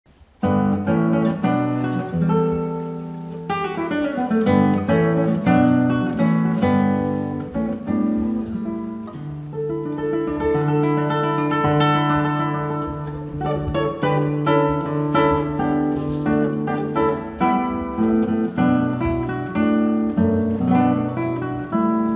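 Solo classical guitar, fingerpicked: a melody of plucked notes over a moving bass line, beginning about half a second in.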